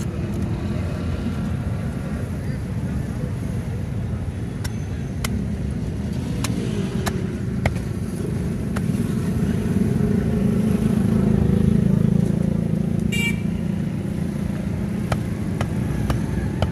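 Steady rumble of road traffic that swells for a few seconds past the middle, with sharp knocks of a heavy knife against a wooden chopping block as a rohu fish is scaled and cut. A brief horn toot about thirteen seconds in.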